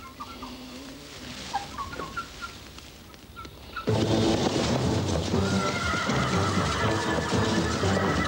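A few short, high chirps over a quiet background, then about four seconds in, a film soundtrack cue breaks in abruptly and loudly, a dense low texture with long held high tones.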